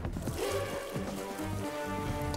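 Hot liquid being poured from a large stainless steel stock pot into a pot below, a steady splashing pour, under background music.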